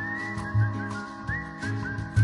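A whistled tune over held chords and a bass line. The whistle sweeps up at the start, then moves in short upward slides.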